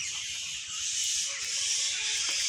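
Steady high-pitched hiss of an insect chorus in woodland trees.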